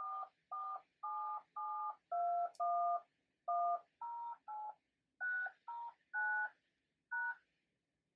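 Touch-tone (DTMF) phone keypad tones dialing a phone number: thirteen short beeps of two notes sounded together, about two a second with a few brief pauses. The last, slightly apart near the end, is the pound key that closes the number.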